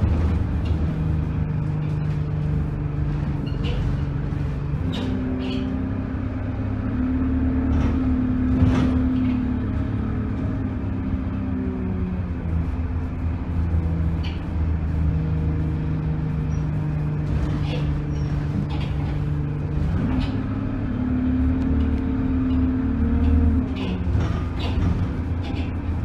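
Single-deck bus heard from inside the passenger cabin while driving. The engine note steps up and down several times, with scattered short rattles and clicks from the interior fittings.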